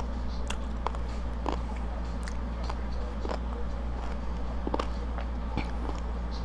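Close-miked chewing of crispy fried food: scattered small crunches and mouth clicks over a steady low hum.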